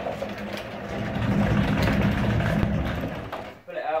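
Large wheeled OSB (oriented strand board) storage box being pulled across concrete paving slabs, its wheels rumbling steadily, loudest in the middle and dying away just before the end.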